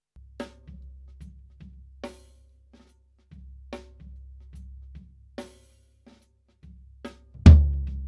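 Soloed tom microphone track from a recorded drum kit, played back through a noise gate. Five evenly spaced snare hits bleed in, and the tom's low drum-head ring cuts in and out as the gate opens and closes. Near the end comes one loud tom hit that rings on. The gate's threshold and range are being raised to trim the resonance while leaving some of it in.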